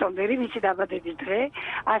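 Speech only: a woman talking without a break.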